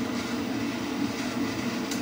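Loud air vent blowing, a steady rushing noise with no change.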